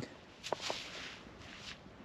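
Faint rustling with a couple of light clicks: a gloved hand handling and rubbing a freshly dug coin.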